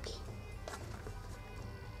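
Quiet background music with a soft, steady low pulse.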